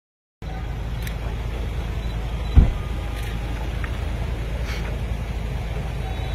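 Steady low rumble of a motor vehicle's engine idling, starting about half a second in, with one heavy thump about two and a half seconds in.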